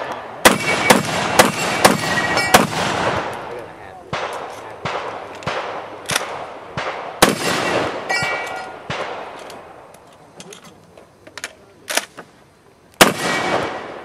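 Shotgun fired about a dozen times in quick strings at steel targets: a fast run of shots in the first three seconds, another from about four to nine seconds, and two last shots near the end. Several hits leave the steel plates ringing.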